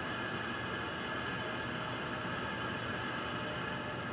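Oxygen hissing steadily as it flows at 20 litres a minute from a tank through a tube, feeding charcoal that is burning hotter.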